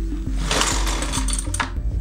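Recoil starter rope of a McCulloch two-stroke petrol trimmer pulled once on full choke for a cold start. It makes a rasping whir with a rapid ticking that starts about half a second in and lasts about a second, over background music.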